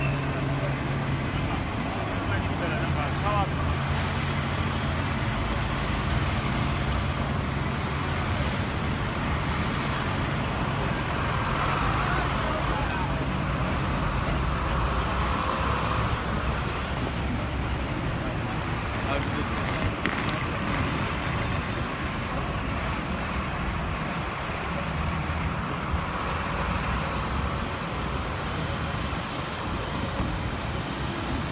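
Busy city street traffic noise with a large vehicle's engine idling as a low steady hum, fading in the middle and returning near the end, over indistinct chatter of passing pedestrians.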